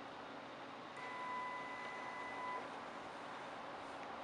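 Steady low hum and hiss of radar and computer equipment. About a second in, a steady high whine comes in for a second and a half, typical of the rail positioner's motor stepping the radar along to the next half-inch position during the scan.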